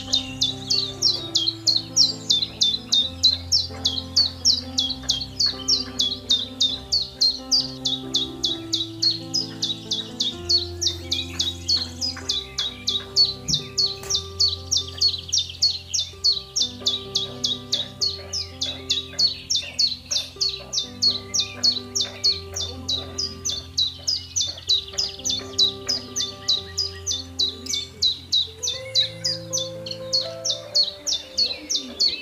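A fast, even run of high bird chirps, about three a second, over background music of sustained low notes.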